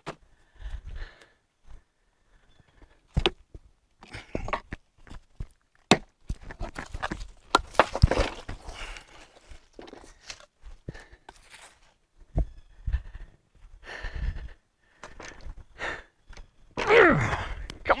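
Footsteps on leaf litter, scuffs and scattered knocks of a hand-held log lever against wood as a heavy oak log is pried off a plank skid, with a man's hard breathing. Near the end comes a loud, strained grunt of effort.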